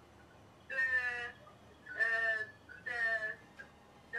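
A young child's high voice on a phone call, coming through the phone's speaker, drawing out three hesitant syllables as it slowly answers a question.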